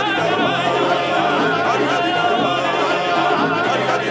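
Three male voices singing a song together with wavering vibrato, accompanied by a plucked small long-necked lute.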